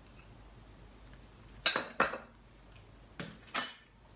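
Small glass bowl clinking against a glass mixing bowl and being set down: four sharp glassy knocks in two pairs, with a short bright ring after each.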